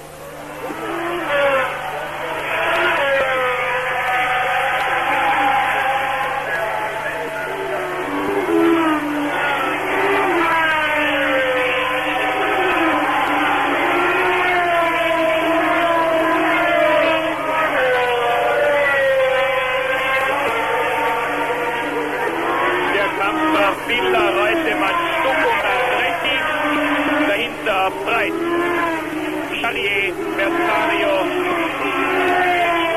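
Formula One race cars passing one after another through a corner, several engine notes overlapping. Each note rises and falls as the cars brake, change gear and accelerate away.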